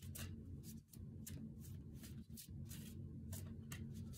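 A deck of tarot cards being shuffled by hand: a quick, irregular run of soft card slides and slaps, about three a second, over a faint steady hum.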